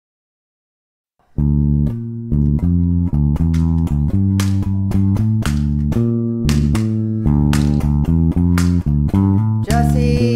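Bass guitar playing a riff of plucked low notes, about two a second, starting suddenly about a second in.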